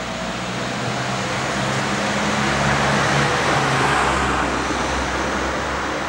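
A motor vehicle passing close by: engine hum with tyre and road noise that builds to its loudest about three to four seconds in, then eases.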